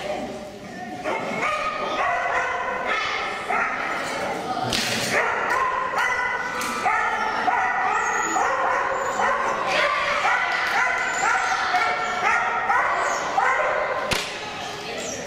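A dog barking over and over in short, high yips, about two a second.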